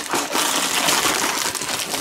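Gold foil wrap torn off by hand, crinkling and ripping continuously.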